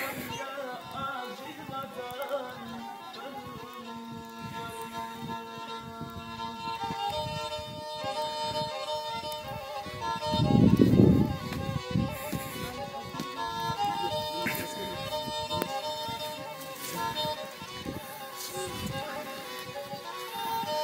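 Black Sea folk music with a kemençe, a small bowed fiddle, playing held notes of a melody. About halfway through, a loud low noise lasts a second or two.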